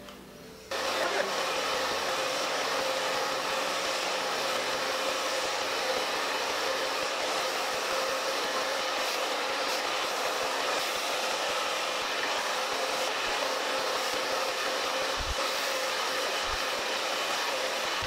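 Drybar hand-held blow dryer running at a steady speed, a constant rush of air with a faint steady hum, while the hair is round-brushed dry. It cuts in suddenly about a second in.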